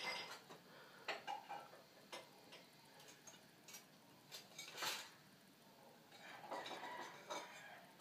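Faint, scattered light clicks and taps from handling a ceramic figure and a fine paintbrush while painting, with a soft rustle about five seconds in.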